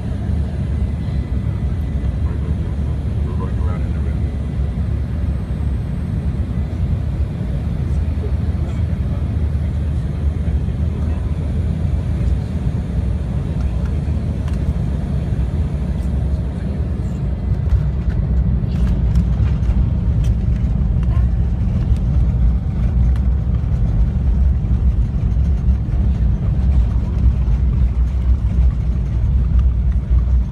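Jet airliner cabin noise during landing: a steady, loud low rumble of engines and airflow on short final. The rumble grows louder a little past halfway as the jet touches down and slows on the runway.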